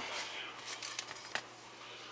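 Faint handling noise, a light rustle with a few small clicks, over a low steady hum.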